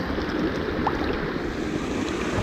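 Steady rushing outdoor noise: wind buffeting the microphone over moving river water, with one faint tick a little under a second in.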